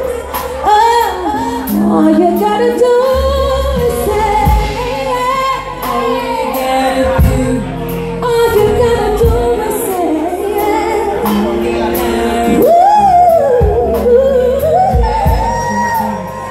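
A woman singing amplified through a microphone, her melody sliding up and down in long ornamented runs, over backing music with a steady beat and bass line.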